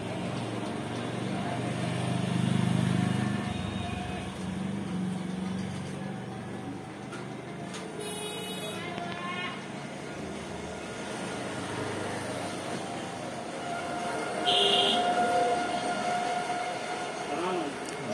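Busy background ambience: indistinct voices over a low rumble, with a short high-pitched tone about three quarters of the way through.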